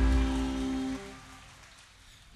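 A live band's chord on keyboard and guitars, with a hiss of cymbal, ringing out and dying away. A held low note stops about halfway through, and the sound fades almost to quiet.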